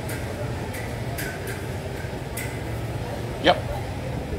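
Steady low background hum with a few faint light clicks and taps as a lime wedge is squeezed over a bowl of noodles.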